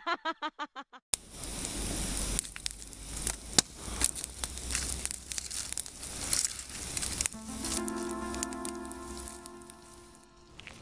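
Campfire of sticks crackling and popping, with a low rumble under it. The tail of an echoed laugh fades out in the first second, and soft music with held notes comes in about seven seconds in.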